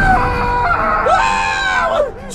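Two long, drawn-out screams in a high, strained cartoon voice, the first about the first half-second and the second from about a second in. They are cries of pain, with a low rumble beneath.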